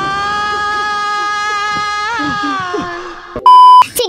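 A single high note held for about three seconds, sliding up as it begins, wavering briefly near the middle and fading out. Near the end comes a short, very loud, pure 1 kHz beep of the kind used to bleep out a word.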